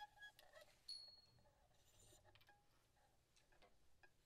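Near silence: room tone with a few faint clicks and a brief faint high tone about a second in.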